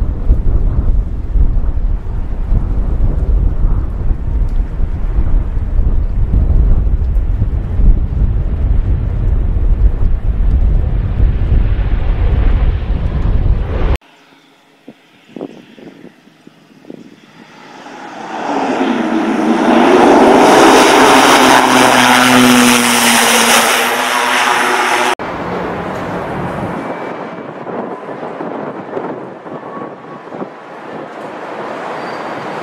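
Aircraft sounds in three cuts. First comes a loud, deep rumble that stops abruptly. After a quiet stretch with a few knocks, an aircraft's engines swell to a loud, wavering run and cut off suddenly. Quieter steady engine noise follows near the end.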